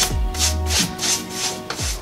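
Background music with a steady beat: short hissing hi-hat-like strokes about four times a second over sustained notes, with deep bass notes that slide down in pitch.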